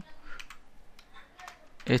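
Computer keyboard keystrokes: a handful of separate, irregularly spaced key presses while HTML is typed into a code editor.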